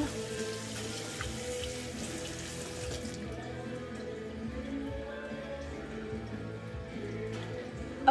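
Kitchen tap running into the sink for hand-washing, shut off about three seconds in, with music playing in the background.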